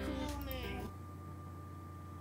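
A voice drawing out a wavering, falling tone for about a second, then only a faint steady hum.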